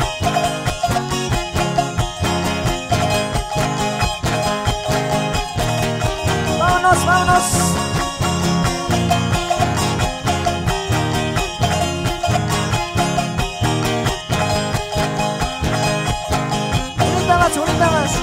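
Live band playing an instrumental passage with a steady dance beat and a guitar melody, no singing.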